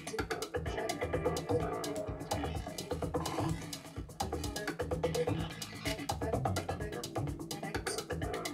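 Live electronic music from a tabletop rig: a dense stream of rapid clicks and knocking percussive hits over irregular low thumps and a few held tones.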